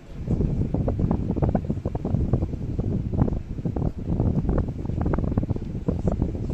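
Wind buffeting the camera microphone: a low rumble in uneven gusts that comes on suddenly at the start and keeps on.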